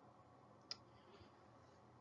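Near silence: faint room tone, broken by one short, sharp click about two-thirds of a second in.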